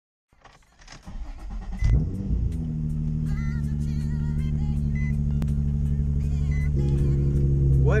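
Nissan 350Z's 3.5-litre VQ V6 being started: starter cranking for about a second, catching with a brief flare of revs just before two seconds in, then settling into a steady idle.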